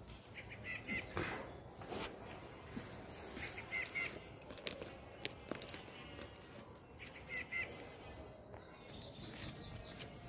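A bird calling a short, high double chirp three times, a few seconds apart, over scattered soft clicks and rustles.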